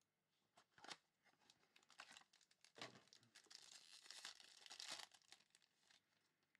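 A Panini Prizm Premier League trading-card box torn open and its pack wrapper crinkled as the cards are pulled out. It is a faint, irregular run of tearing and crackling that grows busier towards the end.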